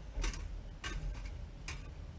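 Small metal ash shovel scraping and tapping in a perforated metal ash sifter while wood-stove ashes are sifted: three sharp clicks, the first the loudest.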